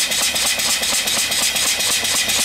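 Home-built single-cylinder vertical live steam engine running on boiler steam, its exhaust blowing off as a loud steady hiss with a rapid, even beat of the strokes underneath. The engine is brand new and not yet broken in, which the builder says keeps it from running smoothly yet.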